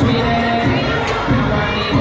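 Audience cheering and shouting loudly over a dance song with a thumping beat.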